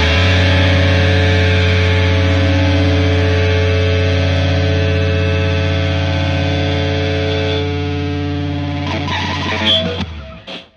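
Rock music ending: a distorted electric guitar and bass chord held and ringing out, slowly fading, with a brief noisy flurry near the end before the sound cuts off.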